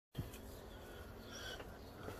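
Quiet outdoor background hiss with a faint, short bird call a little past halfway, after a soft bump at the very start.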